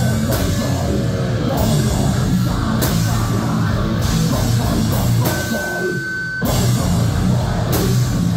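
Deathcore band playing live: down-tuned guitars, pounding drums and a vocalist growling into the microphone, loud and dense. About five seconds in, the low end briefly thins out under a single high steady tone, then the full band crashes back in about a second later.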